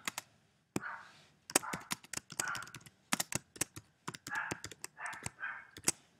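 Computer keyboard being typed on: a run of irregular, quick keystroke clicks as a line of text is entered.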